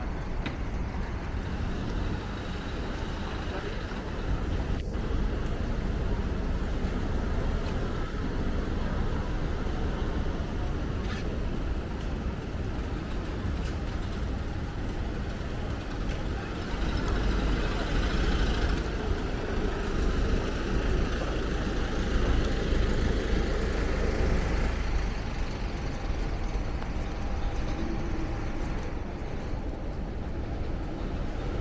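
Busy city street ambience: a steady rumble of road traffic, growing louder for several seconds in the second half as a vehicle passes, with passers-by talking.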